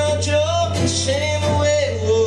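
Live solo performance of a male singer with acoustic guitar, the voice holding long, slightly wavering notes over the guitar.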